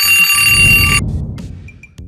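Alarm clock bell ringing as a sound effect, loud and metallic, cutting off about a second in. A low rattling rumble under the ring fades away after it.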